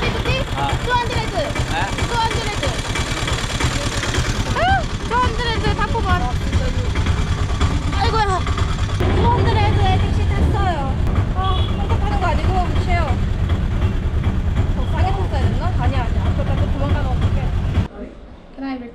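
Auto-rickshaw engine running with a steady low rumble under voices talking; the rumble grows stronger about halfway through.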